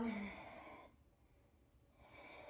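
A woman's audible exhale, a breathy out-breath lasting about a second and fading away.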